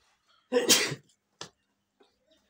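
A person sneezing once, loud and sudden, followed by a brief second, shorter sound about a second later.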